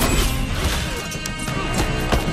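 Film soundtrack of a hand-to-hand knife fight: a tense orchestral score under several quick, sharp hits and blows in the second half.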